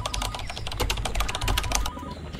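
Keyboard typing sound effect: a rapid run of key clicks that keeps pace with an on-screen caption being typed out letter by letter. It stops just before the end, over a low rumble.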